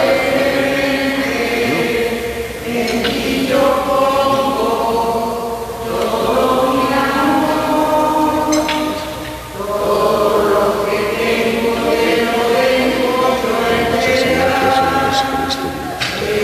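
Voices singing a church hymn at the offertory of a Mass, in sustained phrases a few seconds long with short breaks between them.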